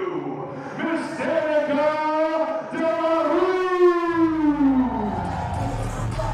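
Ring announcer's voice drawing out a wrestler's name in one long held call that falls away in pitch near the end. Deep bass of entrance music comes in about four seconds in.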